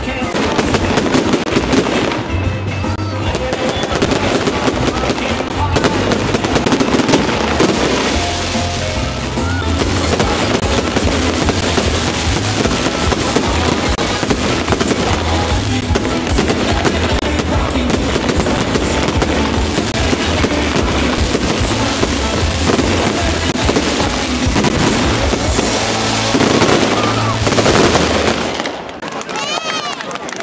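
Fireworks display: rapid crackling bursts and bangs that go on almost without a break, dying down near the end.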